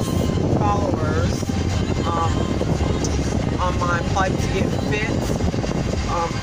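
Steady low rumble of car road and engine noise heard inside the cabin, under a woman's talking.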